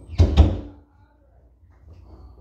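Two thumps in quick succession, a fifth of a second apart, just after the start.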